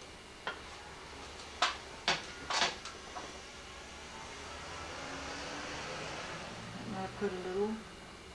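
Four sharp clicks and knocks in the first three seconds from painting tools and containers handled at the easel, followed by a soft rustling hiss and a brief mumbled word near the end.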